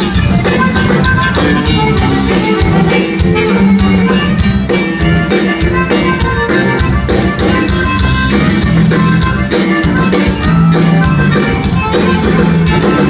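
Live band playing loud amplified music, a button accordion carrying the melody over bass guitar, acoustic guitar and a drum kit keeping a steady beat.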